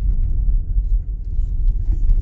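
Steady low rumble inside the cabin of a moving Citroën C4 Picasso with the 1.6 HDi diesel: engine and road noise while driving.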